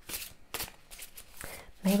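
A deck of tarot cards being shuffled by hand: a quiet, irregular rustle and slide of card edges. A woman's voice begins speaking near the end.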